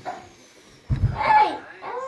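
A person's voice: quiet for about the first second, then short vocal utterances about a second in and again near the end.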